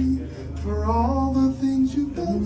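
Voices singing a slow worship melody in held notes, with a rising phrase about half a second in, over a sustained low keyboard note.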